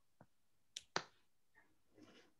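Near silence with three short clicks, the last two close together about a second in: a computer mouse clicking while a web page is scrolled by its scrollbar.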